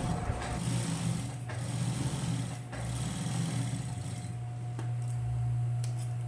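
Industrial sewing machine stitching trim onto fabric, its motor humming steadily. The stitching stops about four seconds in while the motor keeps running.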